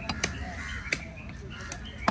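Cleaver chopping a diamond trevally fillet on a wooden chopping block: two sharp chops about two-thirds of a second apart.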